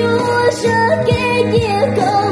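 A singer's voice carrying a Hmong pop song melody over backing music, with held chords and a steady drum beat of about two strikes a second.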